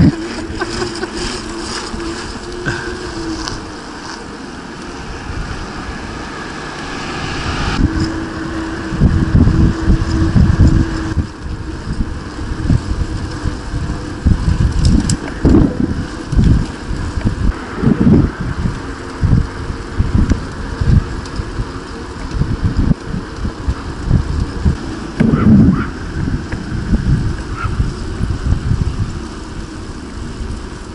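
Wind buffeting the microphone of a camera riding on a moving bicycle, in irregular gusts that grow louder about eight seconds in. A steady hum is heard near the start and again around eight to eleven seconds.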